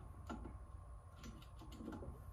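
Faint clicks and ticks of a hand screwdriver turning a small screw into a wire loom holder on a laser engraver frame: one click about a third of a second in, then a quick run of clicks in the second half, over a steady low hum.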